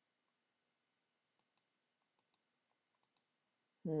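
Computer mouse button clicking faintly, in three quick double clicks about a second apart.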